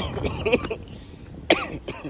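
A man coughs once, sharply, about one and a half seconds in.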